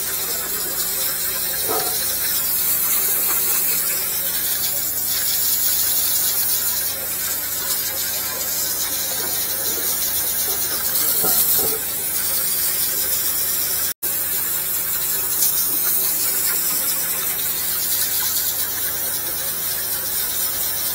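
High-pressure washer lance jetting water down into a drain pit, a steady hiss of spray.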